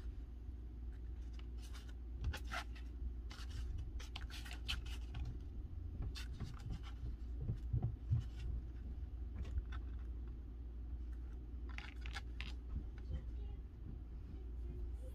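Photo prints and a cardstock sticker strip being slid and repositioned on a paper scrapbook page: scattered short paper rustles and light taps in a few clusters, over a steady low hum.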